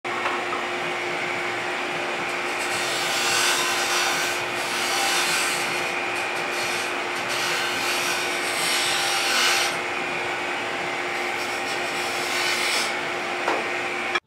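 Wood lathe running with a turning tool cutting a spinning wooden spindle: a hiss of the cut that swells and eases several times as the tool engages and backs off, over the lathe's steady motor hum.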